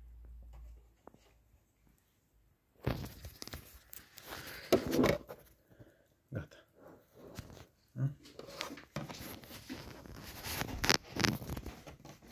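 Hands handling a sewing machine and its thread: scattered light clicks and rustles. They start almost three seconds in, after a short near-silent stretch.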